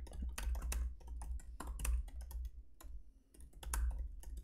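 Typing on a computer keyboard: a quick, irregular run of keystrokes with a short pause a little after three seconds in.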